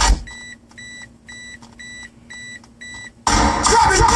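A car's electronic warning chime beeping six times, about two beeps a second, over a faint low hum while the stereo is silent. Loud music cuts off at the start and comes back about three and a quarter seconds in.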